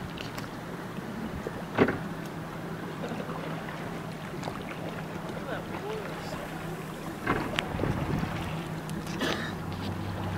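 Motorboat engine running steadily with a low hum as the boat moves along. There is a sharp knock about two seconds in and a few brief clicks near the end.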